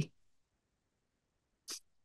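Near silence in a speech pause, broken once near the end by a very brief, sharp mouth noise from the speaker just before he goes on talking.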